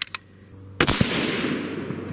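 A single shot from a .308 Winchester Bergara B-14 HMR rifle fitted with its factory radial muzzle brake, about a second in. A second sharp crack follows a fraction of a second later, and a long echo fades away after it.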